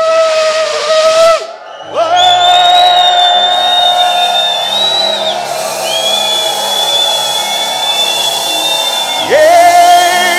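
Shofar (ram's horn) blown in loud blasts: a short blast, then one long held note of about seven seconds that swoops up into its pitch, then another blast starting with an upward swoop near the end. A low steady hum runs underneath.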